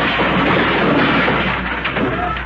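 Sound-effects crash of the overstuffed hall closet being opened: a dense, continuous clattering cascade of junk tumbling out and piling up.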